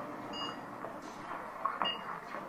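Two short electronic beeps about a second and a half apart, over steady low background noise.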